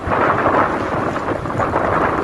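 Wind buffeting the microphone of a camera moving along a road: a loud, steady rushing noise with low rumble.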